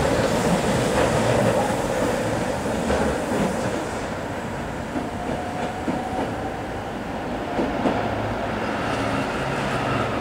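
Keihan Keishin Line 800-series train running through a sharp curve toward the Osakayama Tunnel. The running noise is loudest at first and dies down after about four seconds as the train pulls away into the tunnel.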